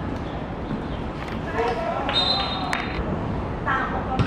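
Football match sounds: players shouting and calling on the pitch, a thud of the ball being kicked, and a brief high steady tone about two seconds in.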